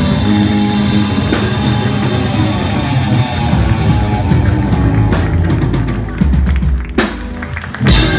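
Punk rock band playing live through a club PA: distorted electric guitars, bass and drum kit. In the last three seconds the steady playing breaks up into separate loud hits, the last near the end.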